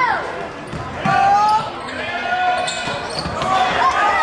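Basketball being dribbled on a hardwood gym floor, with players and spectators shouting over it.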